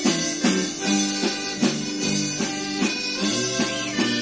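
Live band music: an instrumental passage with a steady beat of about two and a half strokes a second, with held melody notes over a moving bass line.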